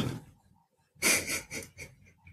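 A man's short audible breath about a second in, followed by two fainter breathy puffs.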